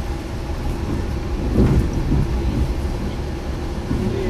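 Steady low rumble of a moving passenger train, heard from inside a sleeper compartment.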